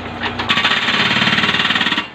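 Hydraulic breaker mounted on a Hitachi EX30 mini excavator, hammering hard ground at the bottom of a foundation trench. It breaks into a rapid, steady hammering about half a second in.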